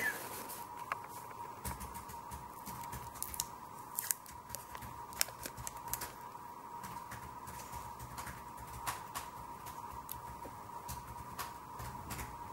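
Oil pastel stick drawn on paper in short strokes, giving irregular sharp scratches and ticks; near the start a paper tissue rustles as the pastel is wiped. A faint steady high tone hums underneath.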